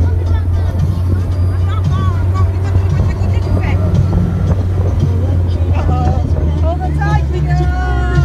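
Steady low rumble of a moving vehicle with wind on the microphone, with raised voices and music over it.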